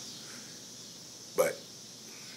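Faint room tone with a single short, abrupt sound from a man's throat about a second and a half in.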